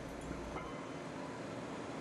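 Steady machinery noise of a drilling rig floor: an even, unbroken rumble and hiss, with a deep hum underneath that drops away under a second in.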